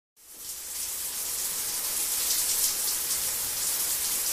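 A steady high hiss, fading in over the first half second and then holding even.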